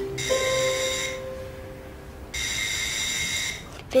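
Electric doorbell ringing twice, each ring a steady electronic tone lasting about a second, with a short gap between them.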